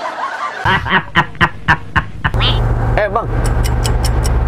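A woman laughing in a quick run of about five short laughs, then the low steady hum of a car's cabin on the move.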